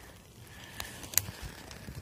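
Faint rustling of dry pine-needle litter as a hand handles freshly picked mushrooms, with a couple of light clicks around the middle, the second one sharper.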